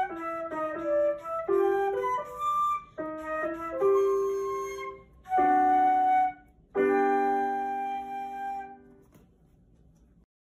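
Flute and digital piano playing a melody together, ending on a long held final chord about seven seconds in that dies away by about nine seconds.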